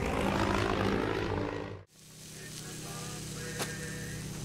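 Dramatic film score cuts off about two seconds in, followed by the steady drone of a biplane's propeller engine approaching and growing slowly louder.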